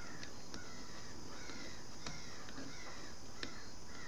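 A few light clicks of a metal knitting hook working the pegs of a knitting loom, over a steady background hiss, with faint repeated bird calls in the background.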